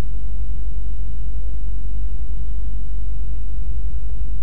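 Steady low rumble with a faint even hiss over it, with no distinct sounds.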